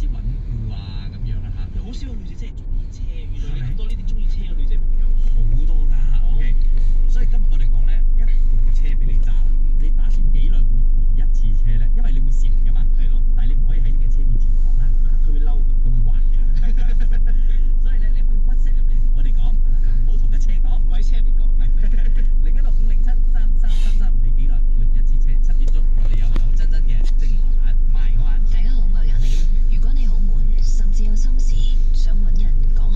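Steady low rumble inside a car's cabin as it waits in traffic, with indistinct voices under it. The level steps up about five seconds in and then stays loud and even.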